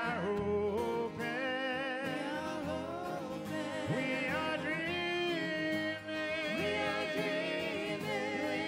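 Live singing with acoustic guitar: a man's voice holds long, wavering notes that slide up and down in pitch.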